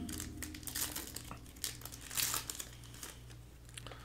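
Foil wrapper of a trading-card pack crinkling in irregular crackly bursts as hands tear it open.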